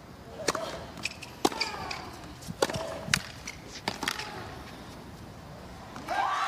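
Tennis ball struck by racquets in a hard-court rally, starting with the serve: about four sharp hits roughly a second apart, with a few short higher-pitched sounds between them. The hits stop about four seconds in.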